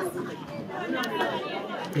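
Background chatter of several people talking at once, quieter than the interview voices, with a laugh at the very end.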